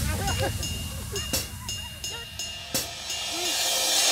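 Indistinct shouts and calls from several voices, children's among them, over a low steady drone.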